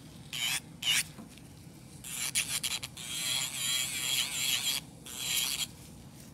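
Electric nail drill with a smoothing bit buffing an acrylic nail: a couple of short rasping touches in the first second, then a high whine that wavers in pitch for about three seconds as the bit runs over the nail, and one more short touch near the end.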